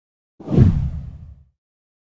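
A whoosh transition sound effect with a deep low rumble under it. It comes in suddenly about half a second in and fades out over about a second.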